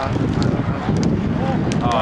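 Background voices of people talking and calling out, with wind on the microphone and a few sharp taps.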